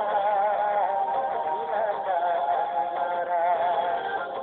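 A man singing a Malay-language pop song over music, holding long notes with a wavering vibrato.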